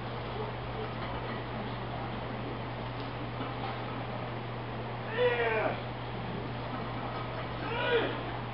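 A voice giving two short, high-pitched calls, the first about five seconds in and lasting about half a second, the second shorter near the end, over a steady low hum.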